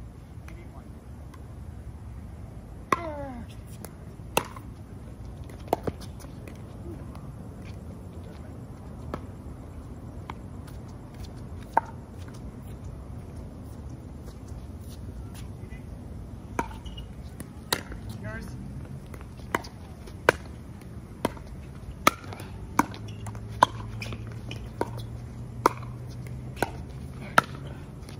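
Pickleball paddles striking a hard plastic pickleball: a few sharp pops spread through the first half, then a long rally of pops about one a second through the second half.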